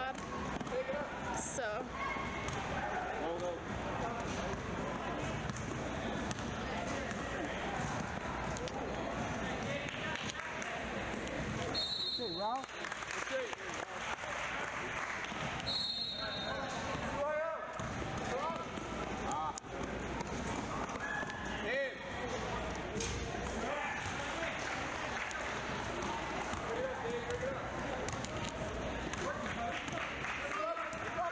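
Basketball game in a gym: the ball bouncing on the hardwood floor over and over, with voices echoing around the hall. Two short, high whistle blasts sound about twelve and sixteen seconds in.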